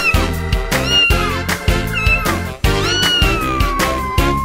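A cartoon cat meows four times, about once a second, over upbeat children's backing music. The last meow is long and drawn out.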